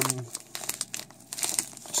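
Plastic bag of one-minute oats crinkling and crackling as it is lifted and handled.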